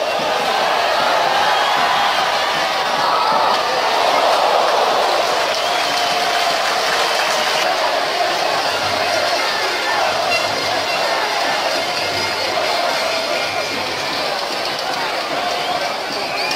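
Football stadium crowd: many spectators' voices shouting and calling at once, steady and loud, swelling a little about four seconds in.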